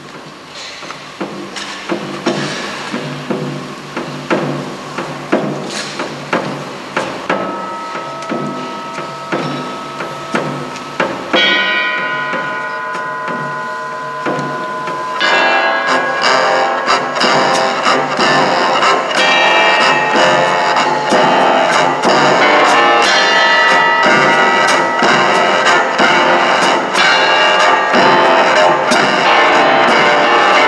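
Jazz piano, double bass and drums starting a piece. It opens with evenly spaced struck notes, held notes come in about 8 seconds in, and about 15 seconds in the trio plays a louder, busier passage.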